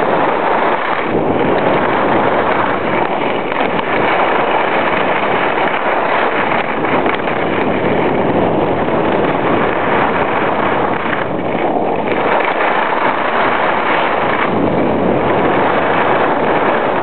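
Loud, steady rush of wind buffeting a compact camera's microphone during a ski descent.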